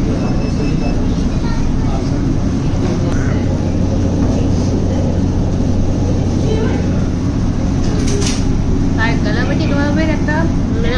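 Steady low rumble with a constant hum from the dining room's background noise. A brief voice comes in near the end.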